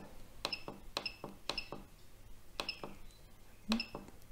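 Turnigy TGY9X transmitter's menu buttons being pressed in turn, each press giving a faint short click with a high key beep. There are about half a dozen presses, half a second to a second apart.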